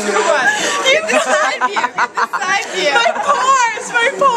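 Several women talking over one another and laughing.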